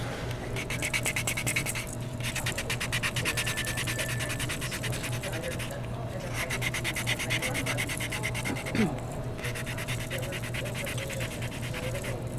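Vintaj reliefing block, coarse grit side, scrubbed quickly back and forth on a patina-coated brass pendant blank: a fast, even rasping in several runs with brief pauses. It is sanding the tacky patina off the raised embossing so the pattern shows through.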